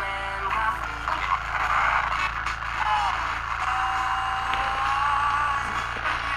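Small pocket transistor radio playing music through its speaker, with static, as it is being tuned. A thin whistling tone drifts slightly in pitch in the second half, over a low steady hum.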